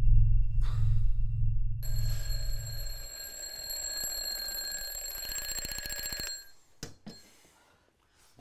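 A mechanical twin-bell alarm clock rings with the fast, even clatter of its hammer on the bells. It starts about two seconds in and is cut off suddenly about six seconds in. A loud deep drone fills the opening three seconds and then fades, and a couple of clicks follow the ringing.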